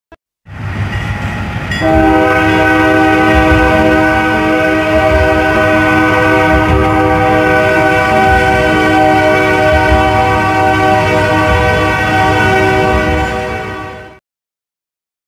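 Diesel freight locomotive's multi-chime air horn sounding one long, steady blast, beginning about two seconds in, over the running noise of the passing train.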